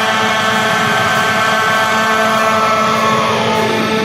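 Heavy metal music: a held, distorted electric guitar chord ringing on with no drums or bass, one note sliding down about three and a half seconds in.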